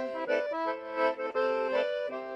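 Piano accordion playing a short phrase of held notes and chords in forró style, with no singing over it.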